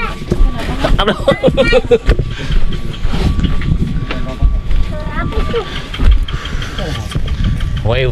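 Passengers talking in the background over a continuous low rumble.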